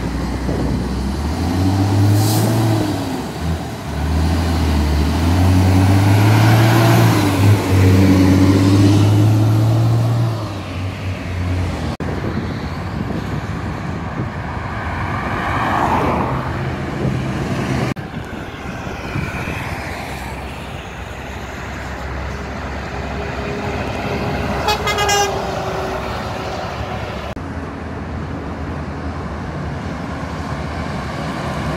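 Diesel engine of a heavy truck loaded with bricks pulling away and accelerating, its pitch rising and dropping through gear changes for about the first ten seconds. Highway traffic passes after that, and a truck horn sounds briefly about 25 seconds in.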